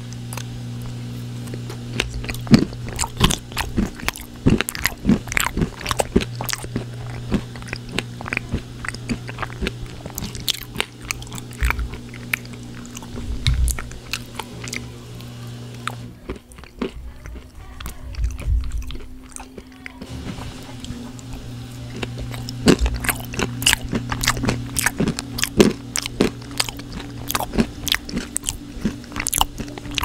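Close-up chewing of crunchy food: a dense run of crisp crunches and bites, with a brief lull a little past the middle.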